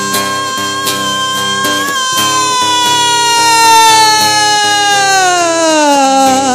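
Live band music with no vocals: one long held note, steady for the first couple of seconds, then sliding slowly downward in pitch, over a steady rhythmic low accompaniment.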